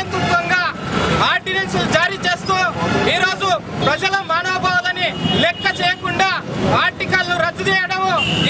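Only speech: a man talking loudly and continuously, addressing the camera.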